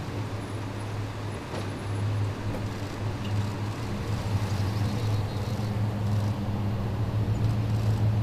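Motor vehicle engine running steadily with a low, even hum, growing slightly louder toward the end.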